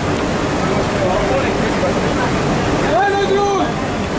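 Steady loud rushing noise of a garment factory floor, with voices talking in the background and one voice speaking briefly about three seconds in.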